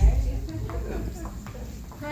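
Indistinct voices of a small group talking, with a few light taps. A low thump comes right at the start.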